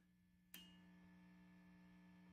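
Near silence: a faint click about half a second in, then a faint steady electrical hum from the idling valve amp.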